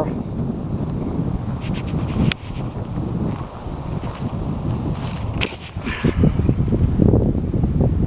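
Wind buffeting the microphone: a steady, gusty low rumble, with two sharp clicks, one about two seconds in and one about five seconds in.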